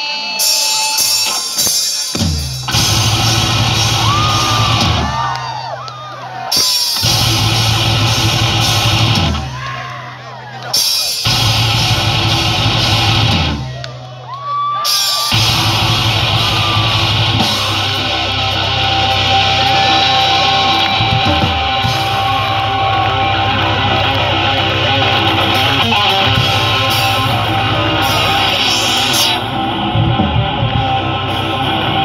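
A live rock band with electric guitars, bass and drums starts a song. After a couple of seconds of crowd yelling, the band comes in loud with a riff that drops out briefly three times, the crowd whooping in the gaps. From about halfway through, the band plays on without stopping.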